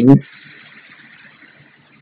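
A man's spoken word trails off, then a pause holding only a faint steady hiss.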